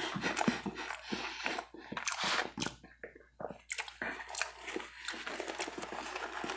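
A person chewing a mixed mouthful of food close to a clip-on microphone: many irregular short chewing sounds, with a brief pause about three seconds in.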